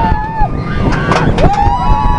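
Roller coaster riders screaming in long held screams. One scream breaks off about half a second in and a new one starts about a second and a half in, with voices overlapping. Under them is the loud rush of wind and the rumble of the train on the track.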